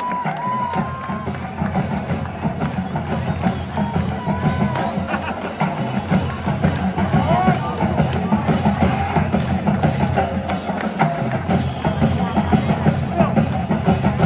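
Marching band drumline playing a steady rhythmic pattern of drum strokes, with crowd chatter and shouts over it.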